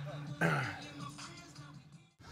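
Faint background music holding a low steady note, with a short low voice sound, like a grunt or throat clear, about half a second in; it fades out and cuts off at the end.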